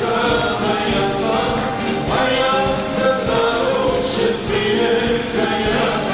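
Live rabiz-style Armenian pop song: a male singer's voice over a backing band with a steady drum beat.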